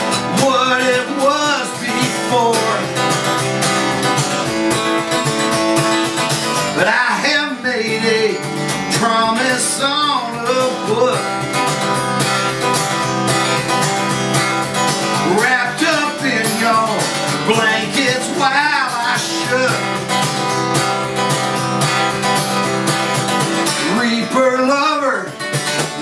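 Steel-string acoustic guitar strummed steadily in a solo song, with a few short wordless vocal phrases here and there over the chords.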